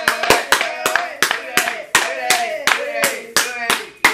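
Hands clapping in a quick, steady rhythm, about four claps a second.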